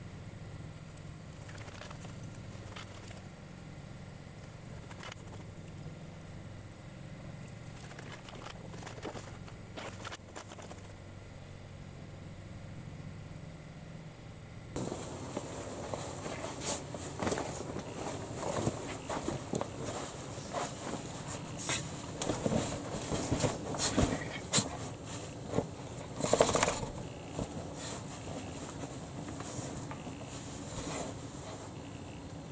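A faint, steady low hum, then, from about halfway, a puppy pawing and digging in blankets and a sleeping bag on a camp cot: irregular rustling of fabric with short scratches.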